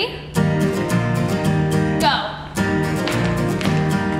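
Acoustic guitar strummed in a steady, even rhythm, the lead-in to a sing-along song. A woman's voice says "Go" about halfway through, and the strumming dips briefly there.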